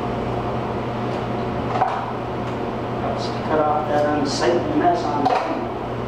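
Light handling knocks of twine being tied off around a firewood bundle, over a steady low hum. A man's voice speaks briefly in the second half.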